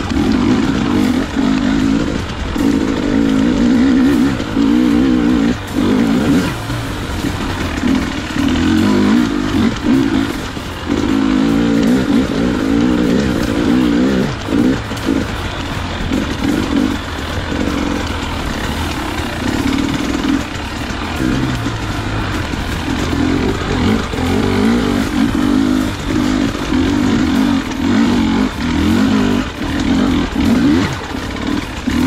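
Dirt bike engine revving up and down as it is ridden along a rough trail, with the throttle opening and closing every second or few.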